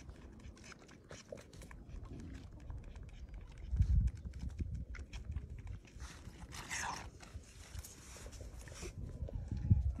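Baby lamb sucking hard at a milk bottle's teat: quick wet clicking and smacking, gulping so eagerly it hardly pauses for breath. Two low thumps, about four seconds in and near the end, are the loudest sounds.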